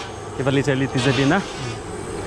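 A man's voice speaking briefly for about a second, the words not made out, over a faint steady high buzz.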